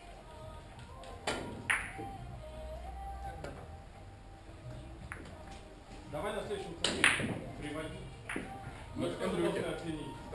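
Russian pyramid billiard balls struck with a cue: two sharp clacks close together about a second and a half in, and the loudest clack about seven seconds in, over a murmur of voices.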